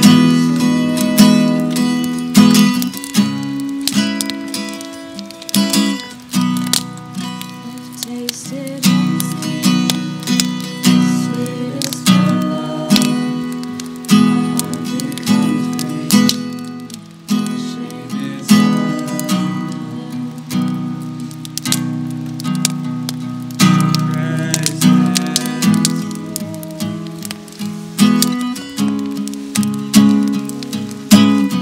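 Acoustic guitar strummed in a steady rhythm of chords, each stroke ringing out and fading before the next.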